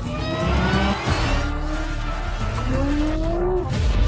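Race car engine revving up in two rising sweeps, the second cutting off shortly before the end, over trailer music.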